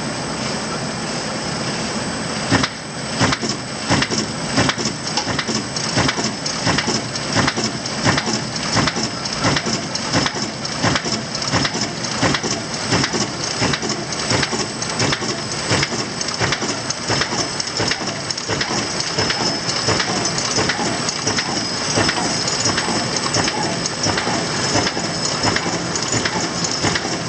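MBO ZSF 66 thread sealing machine running with a steady mechanical hiss and a thin high whine. A little under three seconds in, a regular clatter of short knocks starts, two or three a second, as its mechanism begins cycling.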